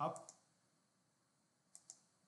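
Two quick clicks of a computer mouse button, close together near the end, in near silence.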